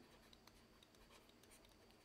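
Near silence, with faint scratching and tapping of a stylus writing by hand on a tablet screen.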